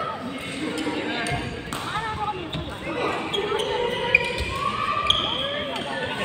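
Indistinct voices of players talking in a large echoing sports hall, with short squeaks of court shoes on the badminton court mat and a few light knocks.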